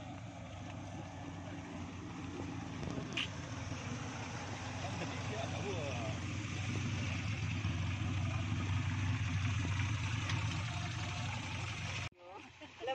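Suzuki Jimny 4x4 engines idling, a steady low drone that grows gradually louder through the clip.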